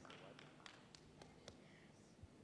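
Near silence: room tone with a few faint, scattered taps.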